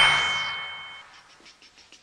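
A loud bell-like ding sound effect that strikes at the start, then rings out and fades over about a second with two high steady tones. Faint small ticks follow.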